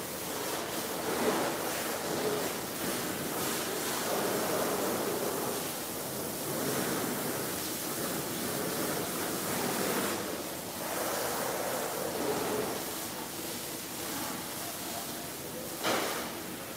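Pressure washer spraying water onto a semi truck: a steady hiss that swells and fades every few seconds as the spray is swept across the truck.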